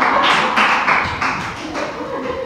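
Audience laughing and clapping, a dense patter of claps that is loudest at the start and dies down toward the end.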